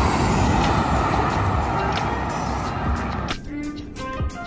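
Road vehicle noise passing on a highway: a loud, steady rush that stops abruptly about three seconds in. Background music with violin comes in at that point.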